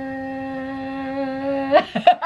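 A woman singing one long held "ahh" note at a steady pitch, as a dramatic fanfare. Near the end the note breaks upward into laughter.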